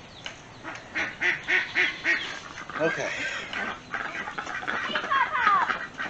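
Domestic ducks quacking: a quick run of calls about a second in, then more calls later.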